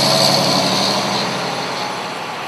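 Fire engine driving past with its engine running, a loud steady rumble that fades slowly as the truck pulls away.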